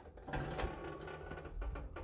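Metal hopper of a 6-inch Gold Rat highbanker being flipped up off the sluice box, a dense run of small metal clicks and scraping starting about a third of a second in.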